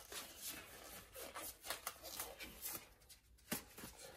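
Faint, irregular rustling and soft handling clicks, with a brief lull about three seconds in.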